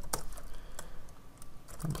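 Computer keyboard being typed on in quick, irregular key clicks.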